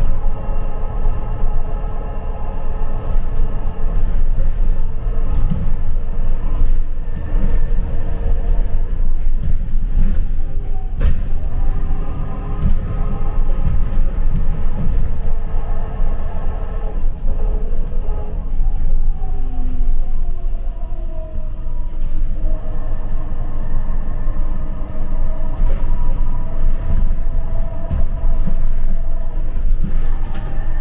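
Inside a moving shuttle bus: a steady low road rumble with a drive whine of several tones above it. About two-thirds of the way through, the whine falls in pitch and then rises again as the bus slows and picks up speed. One sharp click comes a little over a third of the way in.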